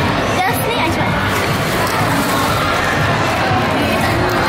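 Steady indistinct babble of many voices, children among them, filling a busy indoor hall.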